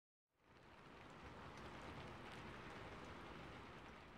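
Faint, even hiss-like noise that fades in about half a second in and fades out near the end.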